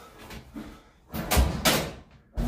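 Metal cabinet of a clothes dryer being gripped and shifted by hand on top of a stacked washer: two loud bumps close together about a second and a half in.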